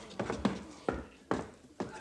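About half a dozen irregular wooden knocks and thuds, as prisoners scramble out of wooden bunks and step onto the plank floor.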